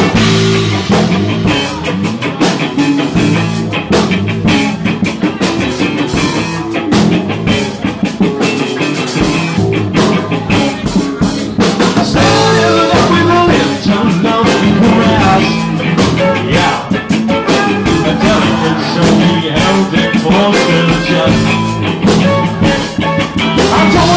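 A live rock band playing a song, with drums and guitar.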